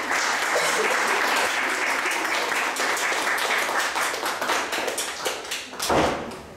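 Audience applauding, a dense clapping that thins out near the end.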